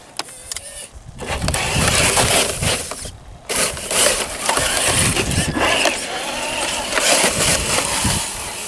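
Traxxas TRX-4 RC crawler on a 3S battery driving in bursts of throttle, its electric motor and drivetrain whirring and its tyres churning through slushy snow as it climbs a snowbank. It pauses briefly about three seconds in, then drives on.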